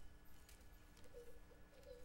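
Near silence: room tone with a steady low hum, and a few faint, short warbling tones about a second in and again near the end.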